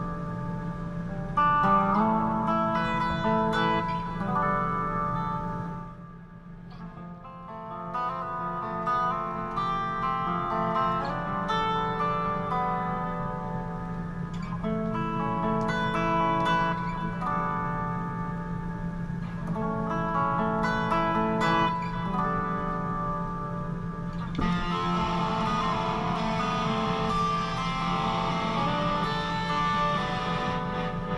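Electric guitar played solo, a run of melodic note lines with held notes. It drops quieter briefly about six seconds in, and from about twenty-four seconds on the tone turns brighter and noisier.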